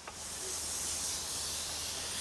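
A steady hiss, brightest in the high end, with a faint low hum beneath.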